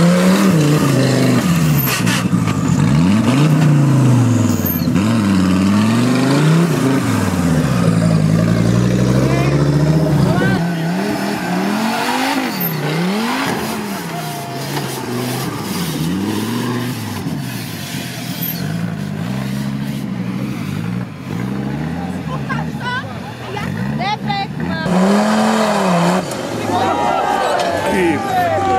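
Off-road trial 4x4 special's engine revving hard under load as it climbs over rocks, the pitch rising and falling repeatedly as the throttle is blipped on and off. Voices can be heard near the end.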